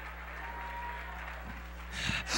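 Faint, steady applause from a church congregation, under a low electrical hum.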